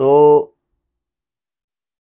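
A man's voice says "so" in the first half-second, then silence.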